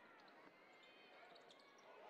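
Near silence: faint basketball arena ambience, a low crowd murmur with faint court sounds from play in progress.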